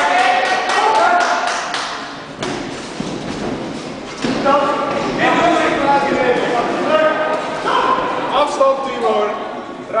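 Ringside voices shouting in a large, echoing hall, with a quick run of sharp thuds in the first two seconds.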